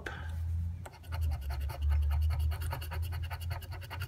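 A flat scraper scratching the coating off a paper scratch lottery ticket in quick, repeated strokes, with a short break about a second in.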